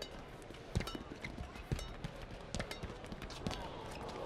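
Badminton rally: a string of sharp taps as rackets hit the shuttlecock, mixed with the players' footfalls and shoe squeaks on the court.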